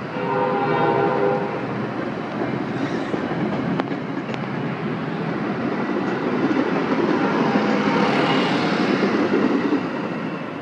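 Metra commuter train of bilevel coaches passing close by, a steady rush of wheels on rail with sharp clacks over rail joints. A train horn sounds a chord for about a second near the start, and fainter tones come again later.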